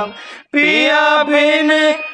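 Male voice singing a slow, held song phrase to harmonium accompaniment. A held note ends at the start, there is a short breath pause, and a new phrase with ornamented pitch bends begins about half a second in.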